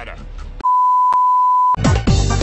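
A steady single-pitched bleep lasting just over a second, the censor-beep sound effect, starting about half a second in and cutting off abruptly. Music with deep, falling bass hits starts right after it.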